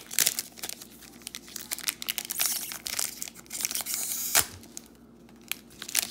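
Foil wrapper of a Panini Prizm Draft Picks trading card pack crinkling and tearing as it is worked open by hand, a pack that does not open easily. A dense run of crinkles, a longer tearing stretch from about two and a half seconds in that ends in a sharp snap a little after four seconds, then quieter crinkles.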